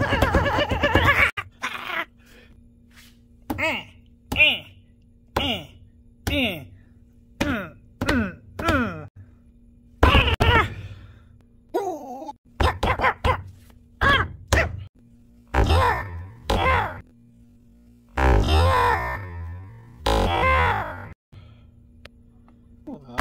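A man's voice groaning over and over: short calls falling in pitch about once a second, then two longer drawn-out groans near the end, over a faint steady hum.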